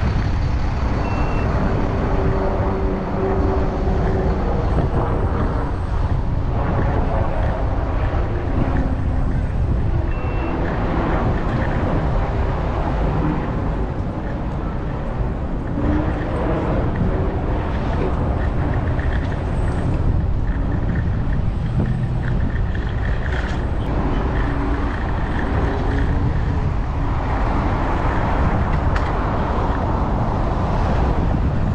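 Steady wind noise on the microphone of a moving electric scooter, with city street traffic mixed in.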